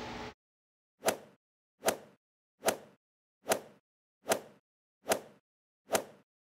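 Seven short, sharp pops at an even pace of a little over one a second, one for each bottle appearing on the table, with dead silence between them.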